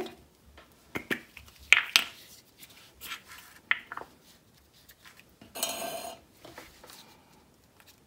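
Crafting handling noise at a wooden table: a few light clicks and knocks as a folded paper cut-out is handled and a glue stick is picked up and uncapped, then a short scraping rub about five and a half seconds in.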